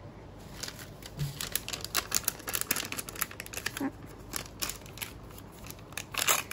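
A toy-brick blind packet being crinkled and torn open by hand: a dense, irregular run of sharp crackles and clicks.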